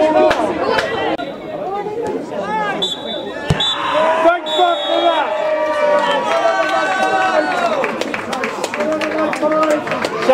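Spectators and players talking and calling out over one another at a small outdoor football ground, with a single sharp thump about three and a half seconds in.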